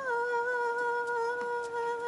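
A woman's voice holding one long sung note, a drawn-out 'bye', its pitch rising briefly at the start and then steady.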